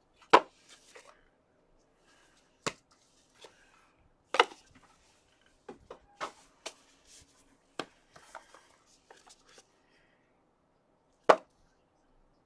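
Sharp clacks and taps from trading cards in hard plastic holders and a card box being handled by gloved hands and set down on a table, about seven in all at uneven intervals. The loudest come about half a second in and near the end, with light rustling between.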